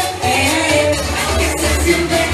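Loud DJ dance music playing, with a sung vocal line over a steady bass.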